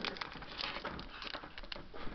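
Faint crinkling and crackling of a foil trading-card booster pack wrapper being handled and worked open in the fingers, a string of small irregular crackles.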